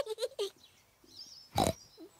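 A cartoon pig character's snort, one short sharp one about one and a half seconds in.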